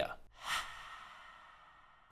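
A man's short breath about half a second in, right after his speech stops, followed by a slow fade to near silence.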